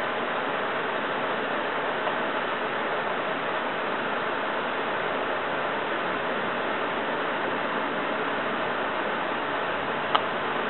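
Steady, even hiss with no pitch or rhythm and no distinct events.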